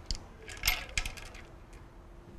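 A few light metallic clinks and taps in the first second as a BMW N63 cam adjuster sprocket is pulled off its camshaft and the timing chain comes loose.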